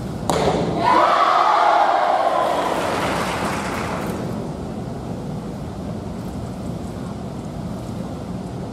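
An arrow strikes the target with a sharp crack, followed within a second by the crowd cheering the hit, a swell of voices that dies away over about three seconds.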